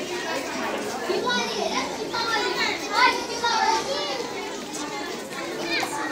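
Many children's voices at once, chattering and calling out over one another, with one louder shout about halfway through.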